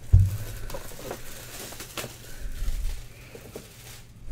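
Handling of a boxed trading-card case, a black box in a white cardboard sleeve, being gripped and slid out: a low knock at the start, then soft rustling and scraping of cardboard with small clicks, one sharper click about two seconds in.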